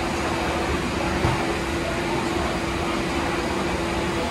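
Steady background noise of a food hall with a constant hum running under it, and a single short knock about a second in.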